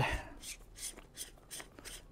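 Faint handling noise from a handheld camera gimbal being turned over in the hands: a soft knock just after the start, then light scattered clicks and rubs from its grip and mounting plate.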